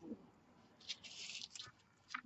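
Faint handling of small paper craft embellishments: a brief soft rustle about a second in, with a few light clicks.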